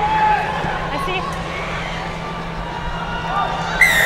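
Stadium crowd murmuring during play. Near the end a referee's whistle gives a sharp, loud blast, signalling the try.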